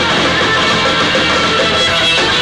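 Hardcore punk band playing live, with distorted electric guitar and bass over drums, loud and unbroken.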